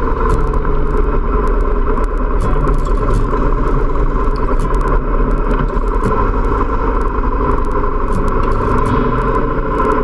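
Motorcycle engines running steadily at cruising speed in a road tunnel, with road and wind noise on the onboard microphone.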